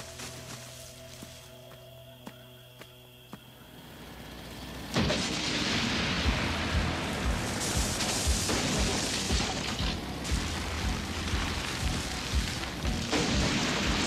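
Soft sustained cartoon background music. About five seconds in, a loud, harsh machine noise with rapid low thuds sets in and carries on: a cartoon sound effect for the villains' forest-wrecking machine.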